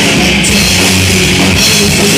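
Live punk rock band playing loud: distorted electric guitars, bass and a full drum kit, recorded from the audience with the sound clipped and dense.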